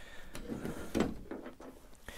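Soft knocks and a rattle of the metal gambrel that the coyote carcass hangs from, shifting back and forth, the most marked knock about a second in.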